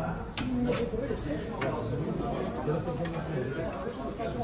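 Voices talking in the background, with three or so sharp clicks like serving utensils knocking on steel pans.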